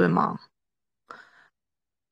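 A person's voice trailing off into a breathy exhale like a sigh, then a short faint breath about a second in, with dead silence around it.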